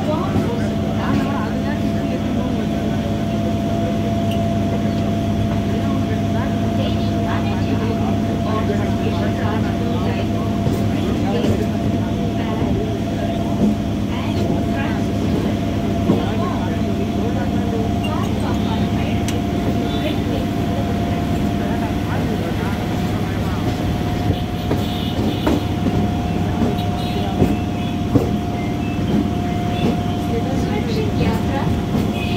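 A moving train heard from inside the coach: the steady running rumble with a constant high hum over it, and a few sharp knocks near the end. People talk in the background.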